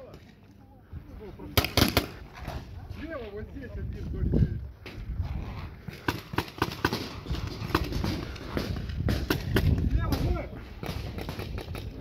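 Sporadic sharp pops of paintball markers firing across the field, a few close together near 2 seconds in and more a little past the middle. Faint distant voices of players come and go, over a low rumble of wind and handling from a moving camera.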